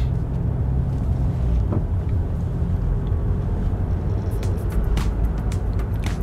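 Car interior noise: a steady low engine and tyre rumble heard from inside the cabin as the car accelerates gently on a main road.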